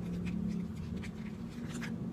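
Faint scraping and rustling of a small cardboard lipstick box being handled, with a few light clicks near the end, over a steady low hum.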